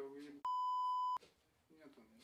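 A single steady electronic censor bleep, a flat high tone lasting under a second, with all the speech beneath it cut out.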